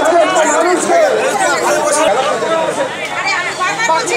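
Several people talking at once in a close group: overlapping chatter.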